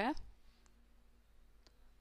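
Two faint computer mouse clicks about a second apart.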